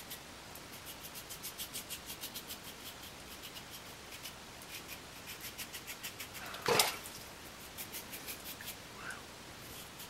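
Vintage Gillette double-edge safety razor scraping stubble through shaving lather on a cross-grain pass: quiet runs of short, crisp rasping strokes, several a second. One brief louder noise comes about two-thirds of the way through.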